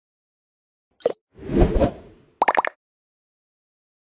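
Logo-sting sound effects: a short pop about a second in, a quick swish, then a rapid stutter of about half a dozen pitched blips, with silence around them.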